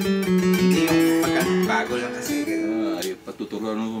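Elegee Adarna steel-string acoustic guitar, with a solid Sitka spruce top, solid rosewood back and sides and phosphor bronze strings, played unplugged: picked notes and chords ring out. The playing drops off briefly a little after three seconds in.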